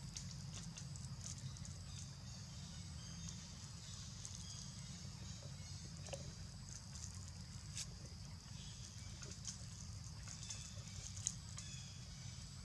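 Faint outdoor ambience: a steady high-pitched buzz with scattered small clicks and rustles over a low rumble.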